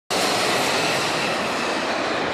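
Steady road and tyre noise with engine hum, heard inside the cabin of a moving car.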